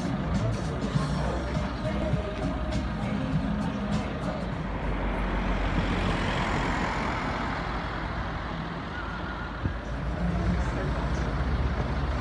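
Street traffic: motor vehicle engines running with a low rumble, and a broad swell of noise around the middle as a vehicle passes.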